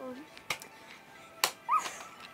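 Plastic toy parts clicking together as they are clipped on: two sharp clicks, about half a second in and a second later, followed by a short high squeal that rises and falls.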